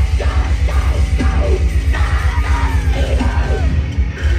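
Live deathcore band playing through a venue PA: distorted guitars over a rapid pounding low-end beat, with a harsh screamed vocal on top.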